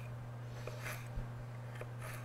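Chef's knife slicing through fresh ginger root on a wooden cutting board: a few faint, irregular cuts, the clearest about a second in.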